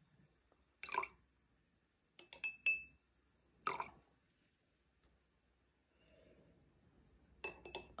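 A metal teaspoon clinking lightly against a glass tumbler as syrup is spooned in and stirred: a few scattered clinks, some with a short ringing tone, in small clusters about two and a half seconds in and again near the end.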